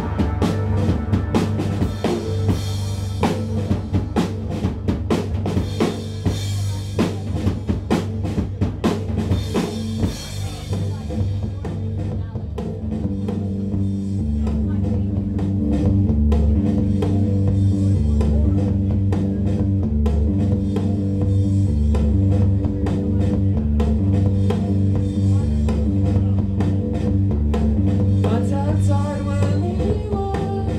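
Rock band playing an instrumental passage live, the drum kit busy with kick, snare and cymbals for the first ten seconds or so. After that the cymbals drop away and a repeating low note pattern takes over under lighter drumming.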